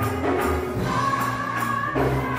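Gospel choir singing a song in full voice over a steady percussive beat.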